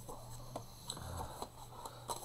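Faint handling sounds as a box of washi tape rolls is lifted off the book's pages: a few light clicks and a soft rustle about a second in, over a steady low hum.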